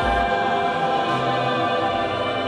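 Music from the song's closing bars: sustained, layered chords held with no clear beat, slowly fading.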